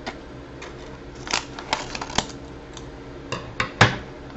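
Scissors snipping the corner off a sachet of dry soup mix, with the packet crinkling: a run of sharp snips and crackles, the loudest near the end.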